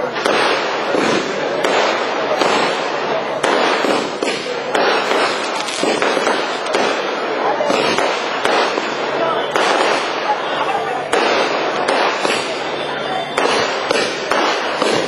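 Aerial fireworks going off in rapid succession, a continuous run of bangs and crackles with no pause.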